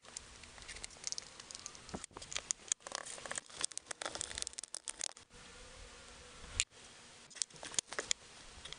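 Rapid light clicking and scraping as a brush handle digs eyeshadow out of a plastic palette and stirs it in a small plastic cup. The clicks thin out after about five seconds to a few scattered taps.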